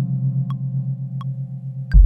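Sampled motor vibraphone notes ringing out and slowly dying away, the lowest one wavering with the motor's tremolo, over short ticks about every 0.7 s. A loud low thump comes right at the end.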